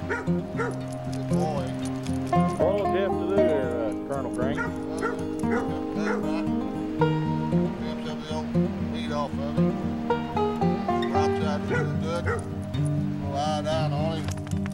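A dog yipping and whining several times, short cries that rise and fall in pitch, over background music.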